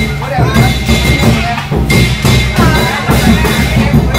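Lion dance percussion: a drum beaten in a fast steady rhythm with crashing cymbals.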